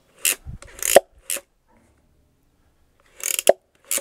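Plastic trigger-operated robot claw being worked, its jaws opening and closing with short rasping, ratchet-like clicks. The clicks come in two bursts, one in the first second and a half and another near the end.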